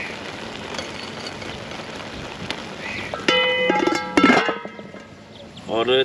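Rice pulao simmering in a large aluminium pot, a steady bubbling hiss as the last of its water cooks off. A bit past halfway a short burst of musical tones cuts in, with a clink.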